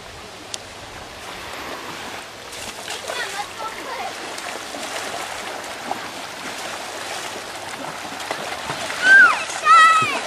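Water splashing as children wade through shallow lake water, with faint voices in the background. Near the end come two loud, high-pitched shrieks.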